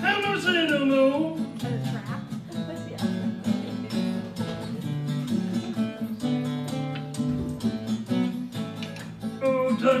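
Fingerpicked acoustic blues guitar in the Piedmont style, with a steady run of low bass notes under plucked treble notes. A long sung note bends down and back up in the first second or so, and the voice comes back in near the end.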